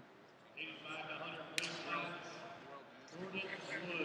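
Indistinct voices of people talking in a large sports hall, with a sharp click about a second and a half in.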